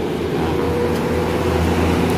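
Road traffic with a vehicle engine running close by, a steady low engine hum that grows slightly louder over the two seconds as a pickup truck draws near.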